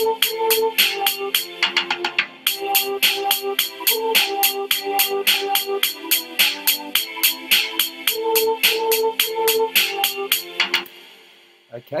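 Notation-software playback of a short, catchy melody over a repeating chord progression: a voice part carries the tune over held violin chords, electric piano chords and a drum kit keeping a steady rhythm of about four hits a second. The playback stops about eleven seconds in and dies away.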